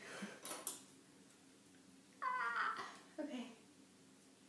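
A young woman's high-pitched, falling nervous squeal with no words, followed a second later by a shorter, lower vocal sound. A few faint breaths are heard in the first second.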